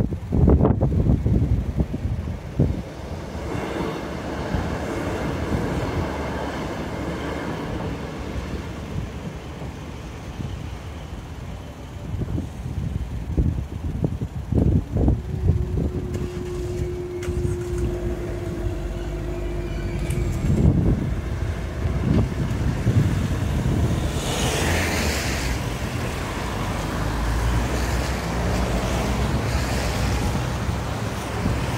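Road traffic at a level crossing with wind buffeting the microphone. A steady hum runs for about four seconds while the crossing barriers rise. Near the end, cars drive over the crossing on the wet road with a tyre hiss.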